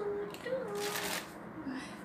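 Plastic packaging around baby-clothes packets crinkling as the packets are shaken, a short rustle about a second in.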